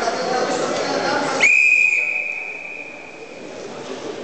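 Referee's whistle blown once, a single long high blast starting sharply about a second and a half in and fading away over the next two seconds, stopping the wrestling on the mat. Before it, indistinct voices and hall noise.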